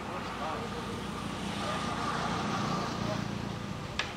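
Outdoor background sound: people's voices talking at a distance over a steady low rumble that grows a little louder in the middle.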